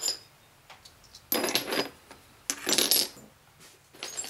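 Flint flakes clinking and clattering against each other as they are set by hand into a kiln, in two short bursts about a second apart.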